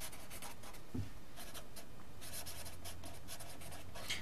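Felt-tip permanent marker writing on paper: a faint run of short scratchy strokes, with a light knock about a second in.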